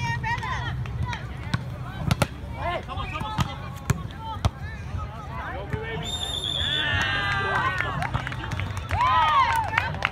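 Volleyball rally: several sharp smacks of hands striking the ball, with players shouting and calling throughout.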